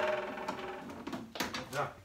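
Ribbed flexible dust-extraction hose being pushed and twisted onto the plastic chip-hood outlet of a planer-thicknesser. The hose ridges scrape and rattle quickly over the plastic, fading over the first second, then a couple of short knocks as the hose seats.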